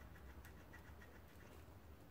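Near silence, with faint scratchy rubbing and small ticks of a cloth being wiped across the front of a revolver's cylinder.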